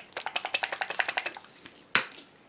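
A quick run of light plastic clicks and clatter, as acrylic paint bottles are handled in a search for the white paint, followed by one sharp click near the end.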